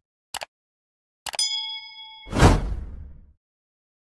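Subscribe-button animation sound effects: a mouse click, then another click followed by a bell ding that rings for about a second, then a loud whoosh about two and a half seconds in that fades out within a second.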